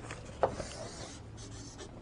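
Writing on the board: a short tap about half a second in as the writing tip meets the board, then a scratchy stroke and a few fainter ones.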